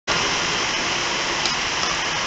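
Steady, even hiss of background noise at a constant level, starting abruptly at the very beginning.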